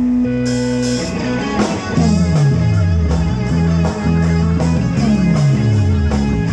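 A live rock band playing an instrumental intro through amplifiers: electric guitar and bass, with the drum kit coming in about half a second in on a steady beat. A low bass note slides down twice.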